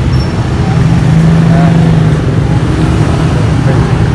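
Loud, steady low hum and rumble of motor traffic running nearby.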